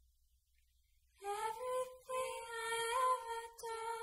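Near silence, then from about a second in a high sung melody of three long held notes with slight bends.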